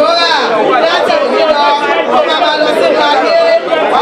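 Several voices praying aloud together, overlapping into a loud, continuous chatter.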